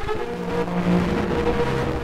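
Orchestral recording of a Baroque concerto: the orchestra holds sustained chords over a steady hiss of recording noise. A brief click sounds right at the start.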